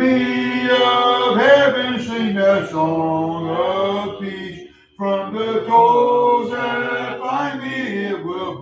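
Congregation singing a hymn a cappella, voices holding long sustained notes phrase by phrase, with a short break between phrases just before five seconds in.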